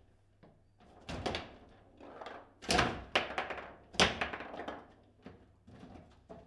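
Table football play: irregular sharp knocks and clacks of the ball being struck by the plastic figures and of the rods being jerked, the loudest two about a second apart near the middle.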